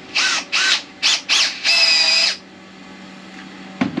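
Handheld power drill fitted with a long home-made bit extension, its trigger pulled in four short spurts with the motor whining up and down, then held for a longer run of under a second.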